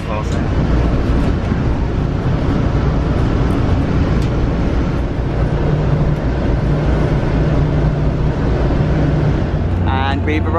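Steady rumble of a moving commuter train heard from inside the passenger coach, with a low hum that grows steadier from about halfway in until near the end.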